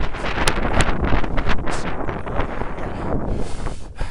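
Wind buffeting the microphone of a camera carried on a moving bicycle: a loud, rough, gusting rumble. Two sharp clicks come in the first second.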